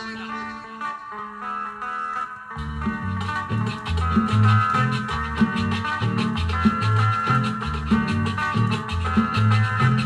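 Peruvian-style cumbia led by a guitar melody. Bass and percussion come in about two and a half seconds in with a steady dance beat.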